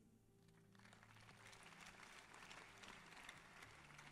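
Near silence: faint background noise of a large hall, rising slightly about a second in.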